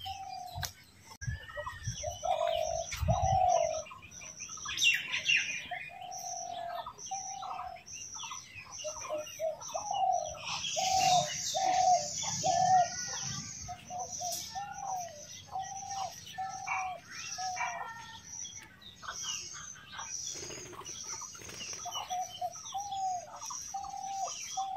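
Birds calling: a steady series of short, slightly falling calls, one or two a second, with higher chirps over them.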